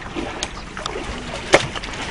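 Shallow water sloshing and splashing as a large crocodile lunges for dangled meat, with one sharp crack, the loudest sound, about one and a half seconds in.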